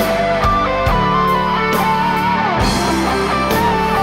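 Live rock band playing, led by an electric guitar line with bent and wavering notes over drums, cymbals and bass.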